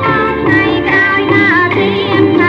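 Old Khmer popular song from a 1971 record: a voice sings a wavering, ornamented melody over band accompaniment.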